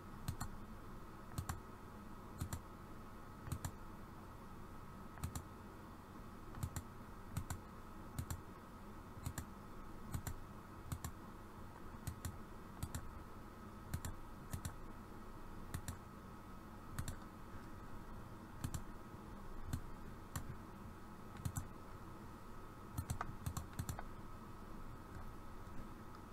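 Computer mouse clicking, short sharp clicks at an uneven pace of about one a second, some in quick pairs, over a faint steady hum.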